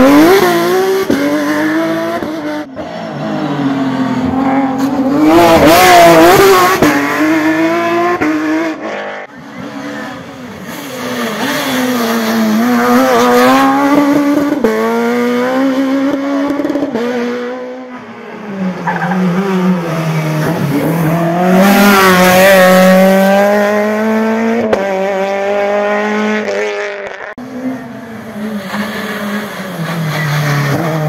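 Rally car engines revving hard as the cars brake and accelerate past, the engine note climbing and dropping with the gear changes. Several passes follow one another, with abrupt breaks between them.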